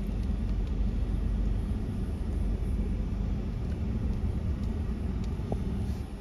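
Steady low rumble heard inside a Ford F-150 pickup's cab as it drives slowly along a sandy dirt road: engine and tyre noise.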